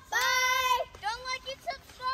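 A child singing: one long held high note, then a run of short sung syllables in the second half.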